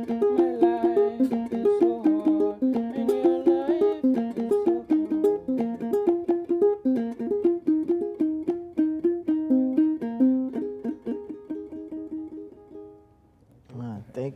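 Akonting, the Jola gourd-bodied folk lute, plucked in a quick, rhythmic melody of repeated notes. The playing stops about thirteen seconds in and the last notes fade.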